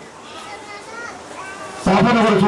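Faint children's voices in the background during a pause in a man's speech, which resumes shortly before the end.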